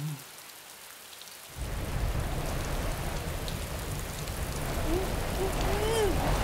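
Rain sound effect. A light steady patter turns suddenly into a heavy downpour about a second and a half in, and the downpour grows louder. A wavering pitched sound starts faintly near the end.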